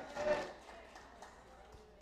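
A pause in amplified preaching: the preacher's microphone voice trails off in the hall's reverberation, then low, quiet room tone.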